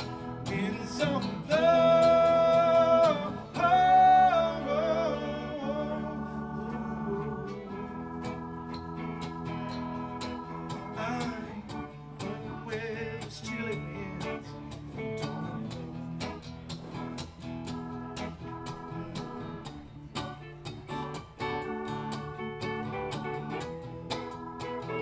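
Live acoustic band music: strummed acoustic guitar with keyboard and electric guitar, and sung vocals. The voices are loudest in two long held notes a couple of seconds in.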